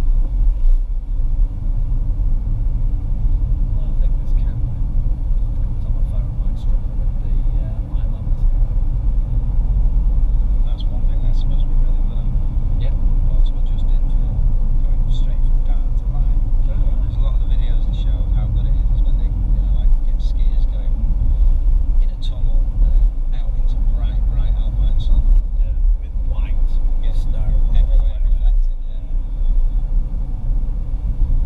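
Car driving on a country road, with a steady low rumble of tyre and road noise and wind.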